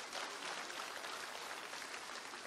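Audience applauding, a faint, steady patter of many hands clapping.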